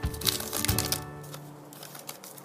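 Background music playing steadily, with short papery rustles and crinkles in the first second as a stack of Pokémon trading cards is handled and shuffled.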